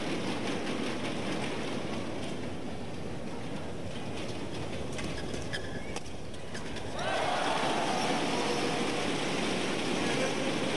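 Arena crowd noise around a badminton court. The crowd quietens during a rally, with a few sharp racket hits and shoe squeaks. About seven seconds in it bursts into loud cheering as the point ends.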